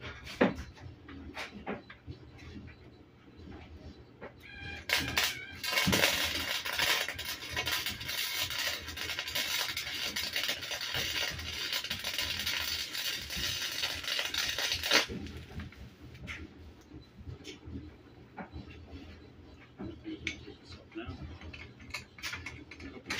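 Electric arc welding on chromoly steel: the arc strikes about five seconds in and runs as a steady dense crackle for about ten seconds before cutting off suddenly. Scattered clicks and knocks of metal being handled come before and after.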